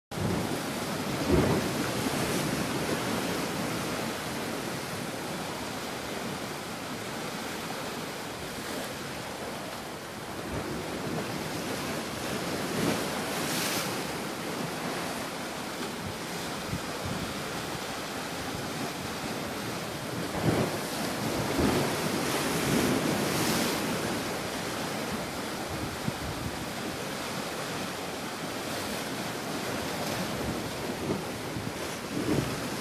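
Sea waves washing against shoreline rocks in a steady rush, with wind on the microphone. The noise swells in a few louder surges, the first about a second in and several more in the second half.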